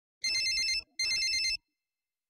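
A telephone ringing with a fast electronic trill: two short rings, each a little over half a second long, with a brief gap between.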